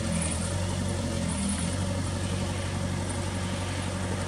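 Mini excavator's diesel engine running steadily at a constant pitch.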